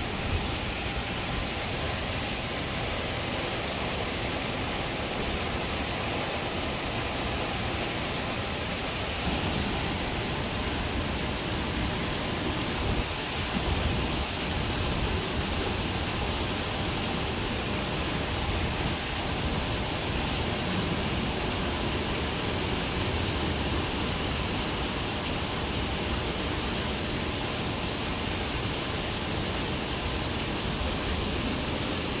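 Heavy hurricane rain and wind: a steady rushing hiss of downpour that grows a little louder with gusts between about ten and fifteen seconds in.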